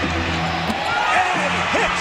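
TV broadcast sound of an NBA playoff game: steady arena crowd noise with a commentator's voice over it.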